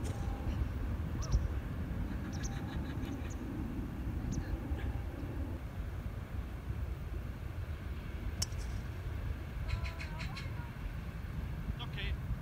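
Wind rumbling on the microphone outdoors, an uneven low buffeting throughout, with a few faint sharp clicks scattered through it, one clearer about eight seconds in.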